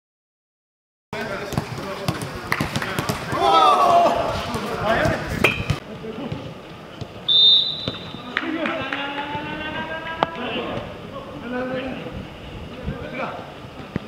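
Footballers' voices calling on a training pitch over repeated thuds of footballs being kicked in a passing drill, starting about a second in. A brief high whistle sounds about seven seconds in.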